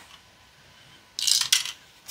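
A four-sided die rattling down through a dice tower and landing in its tray: one short clatter a little over a second in, ending in a sharp click.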